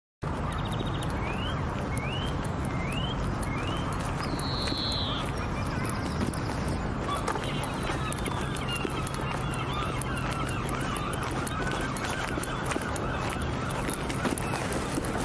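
Outdoor ambience that starts abruptly: a steady low background hum and noise with birds calling over it. There is a run of four short rising chirps near the start, a longer, higher call a few seconds in, and fainter chirps later.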